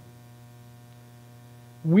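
Steady low electrical hum, mains hum on the sound system, during a pause; a man's voice starts just before the end.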